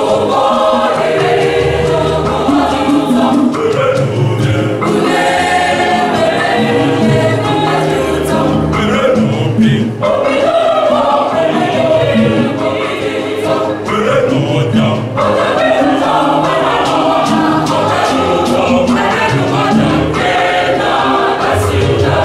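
Mixed choir of women's and men's voices singing an Igbo-language gospel cantata song in harmony, in continuous phrases.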